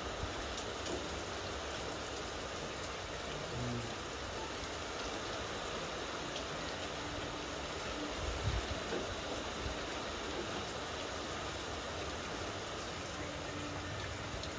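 Steady rain falling on wet pavement and metal carport roofs, an even rushing noise, with a brief low rumble a little past the middle.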